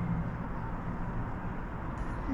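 Steady, distant road traffic hum from the street far below, heard through an open window.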